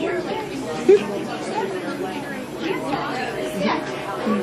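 Several people talking and laughing over one another in a busy room, with one brief loud vocal burst about a second in.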